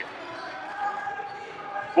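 A basketball being dribbled on a hardwood gym floor, under the steady background noise of a crowd in a gymnasium. One long held voice carries through from about half a second in.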